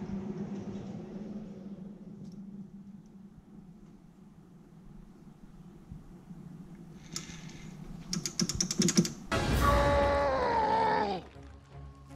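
An industrial battery charger started up without charging: a low steady hum that fades over the first few seconds, then a quick run of clicks. About nine seconds in, a loud sound falling in pitch lasts about two seconds.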